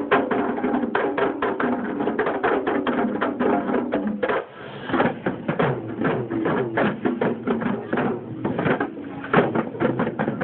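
A group of barrel drums played fast together in a dense, driving rhythm, with held tones over the drumming in the first few seconds. The drumming breaks briefly about four and a half seconds in, then picks up again with voices calling over it.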